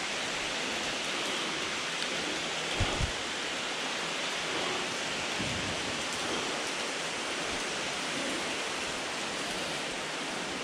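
Steady rush of spring water running through the cave, an even hiss. Two brief low thumps come about three seconds in, and a softer one a little later.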